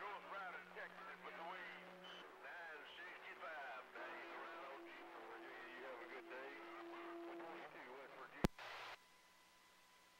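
Faint voices of other stations coming in over a CB radio's receiver, with hiss and a steady hum underneath. A sharp click about eight and a half seconds in, after which the sound cuts out.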